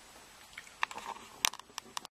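A few short, sharp clicks and taps over faint room tone, starting about a second in.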